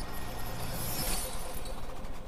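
Cinematic logo-intro sound effect: a steady low rumble under a hissing haze, with a bright shimmering sweep about a second in as the title breaks apart into particles.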